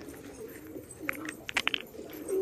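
Domestic pigeons cooing, low and wavering, with a few short clicks about a second in.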